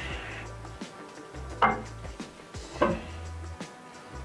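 Two sharp metal knocks, about a second apart, as a heavy aluminum fixture plate is lifted and bumped against the mill table. Background music with a steady bass line runs under them.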